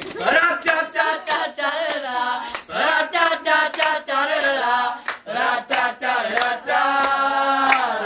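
Several voices singing a sustained, wordless melody together, with hand claps mixed in.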